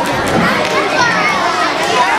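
Many children's voices chattering at once, a steady overlapping hubbub with no single voice standing out, in a school gymnasium.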